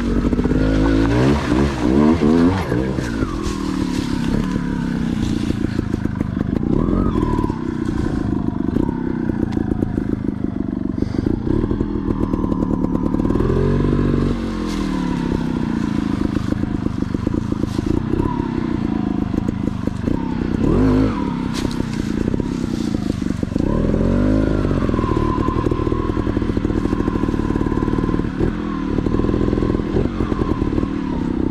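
Dirt bike engine ridden slowly over rough trail, its revs rising and falling again and again as the throttle is blipped and rolled off, with scattered clattering knocks from the bike over rocks and roots.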